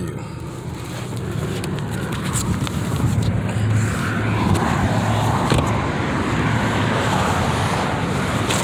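Freeway traffic passing close by: a steady rush of tyre and engine noise that grows a little louder after the first couple of seconds.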